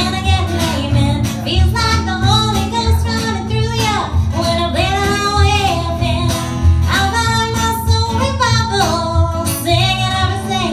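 A woman singing live, accompanied by a strummed acoustic guitar, with a low bass pulse underneath from a washtub bass.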